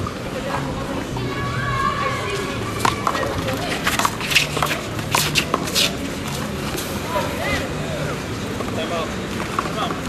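A one-wall handball rally: about half a dozen sharp slaps of the small rubber ball being struck by hand and smacking off the wall and court, bunched between about three and six seconds in, over background crowd voices.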